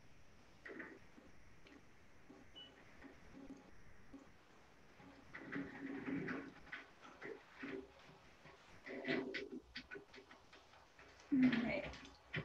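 Faint, indistinct voice murmuring, mixed with soft scratches and taps; it grows louder just before the end.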